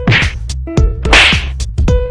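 Upbeat electronic music with a drum beat, overlaid by two sharp swish sound effects: a short one at the start and a louder one about a second in.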